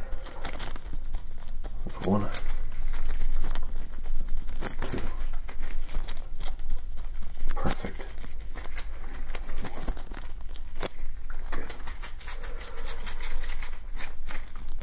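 Close-up crinkling and rubbing of a disposable glove as a gloved hand works over a pimple-popping practice pad, in a run of irregular crackles.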